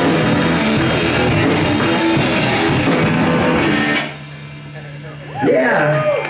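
Live rock band with electric guitars and drum kit playing loud until the song stops abruptly about four seconds in, leaving a low steady hum. A man's voice then starts speaking through the PA near the end.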